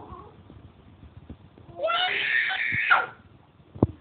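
A young child's high-pitched scream, lasting about a second and starting about two seconds in.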